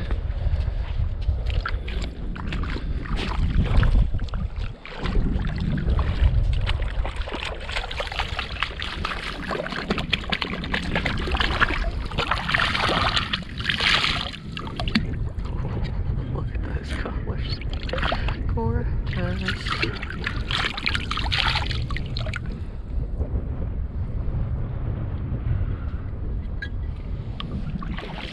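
A large whelk shell being swished through shallow seawater to rinse the sand out, with splashing and water pouring off it, loudest in two spells near the middle, over steady wind buffeting the microphone.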